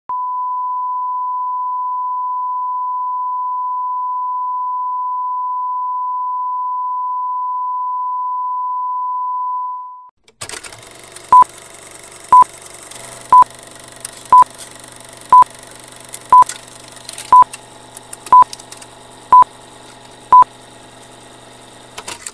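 Colour-bar test tone, one steady pure tone held for about ten seconds, then a film-leader countdown: ten short beeps a second apart over film crackle, clicks and a low hum.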